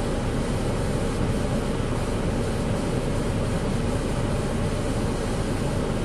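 Steady rushing noise of wind buffeting the microphone, heaviest at the low end.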